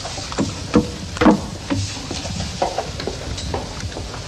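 Irregular knocks and steps of a woman's high heels on a hard floor as she moves about, the loudest about a second in, over the steady hiss of an old TV soundtrack.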